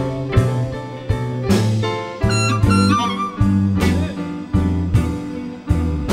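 A live blues band playing, led by amplified harmonicas with bent notes, over electric guitar, bass and a steady drum beat.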